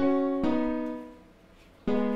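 FL Keys piano plugin in FL Studio playing a keys chord pattern. Two chords are struck about half a second apart at the start and ring out and fade, then a third chord is struck near the end.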